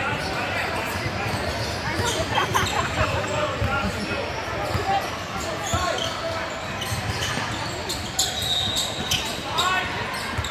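A basketball being dribbled on a hardwood gym floor, the bounces echoing in a large hall, amid the voices of players and spectators.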